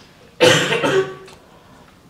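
A person coughs once, a sudden loud burst about half a second in that fades out within about a second.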